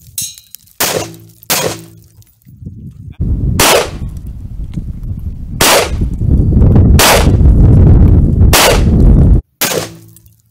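Six rifle shots at uneven spacing from a Bushmaster AR-15 in .223 and a Riley Defense AK-pattern rifle in 7.62x39mm, fired at bulletproof plastic airplane window panels, which they go through. From about three seconds in, a loud low-pitched noise runs under the shots and stops shortly before the last one.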